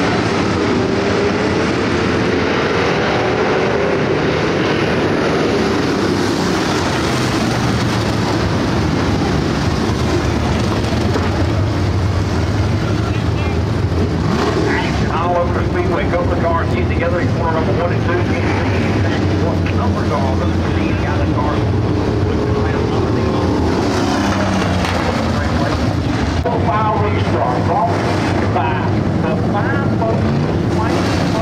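Engines of a pack of dirt-track stock cars running as they circle the track: a loud, continuous drone whose pitch rises and falls as cars pass.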